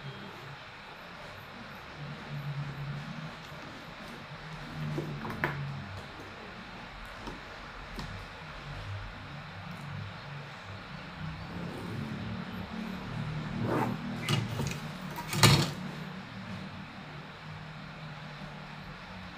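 A plastic set square and pen worked over a paper pattern on a table: a few sharp knocks as the square is handled and set down, the loudest about fifteen seconds in, over a steady low hum.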